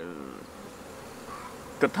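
Honeybees buzzing around their hives: a steady hum, a little louder at the very start.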